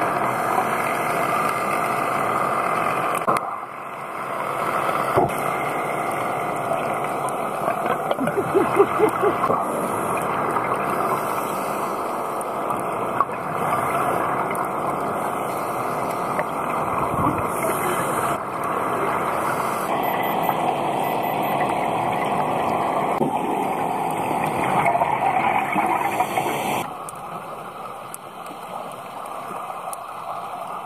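Steady rushing underwater noise of scuba divers' regulators and exhaled bubbles, heard through a diving camera's waterproof housing, turning quieter near the end.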